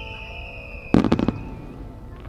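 Aerial firework shells bursting: a quick string of sharp cracks about a second in. Before it, a high sustained tone slowly falls in pitch and fades out.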